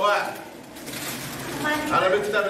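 Only speech: voices talking in a classroom with room echo. A voice trails off at the start, there is a brief lull of room noise, then voices talk again toward the end.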